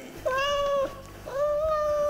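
A cat meowing twice: two drawn-out meows, the second longer than the first.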